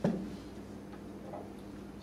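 A single sharp knock at the very start, dying away quickly, followed by a steady low hum of the room.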